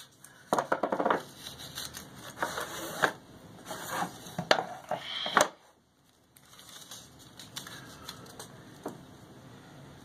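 Blue painter's tape being peeled off its roll in short rasping pulls and pressed down, with rustling and light knocks as a wooden frame is handled on a desk. A sharp click comes about five seconds in, followed by a brief pause.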